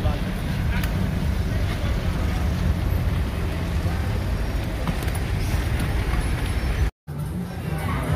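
Steady street traffic noise with a low rumble. It drops out abruptly for a moment about seven seconds in.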